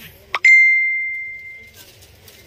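A single clear, bell-like ding, just after a short click, ringing one bright tone that fades away over about a second and a half.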